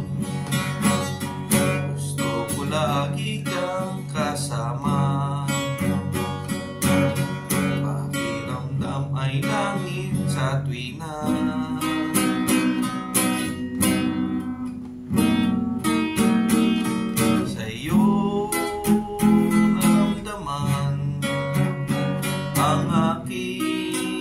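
Acoustic guitar playing a strummed and picked instrumental break in a Tagalog love song.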